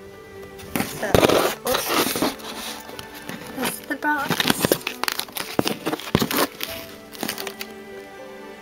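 A small cardboard box handled close to the microphone, giving a run of clicks, taps and rustles as it is turned over in the hand, over background music.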